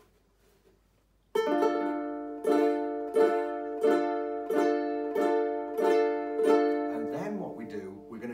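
Two ukuleles strummed together on a D minor chord, about eight even strums starting a little over a second in, the nylon strings ringing between strokes.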